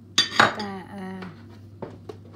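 A metal spoon knocking against a mixing bowl: two quick knocks near the start and one more near the end.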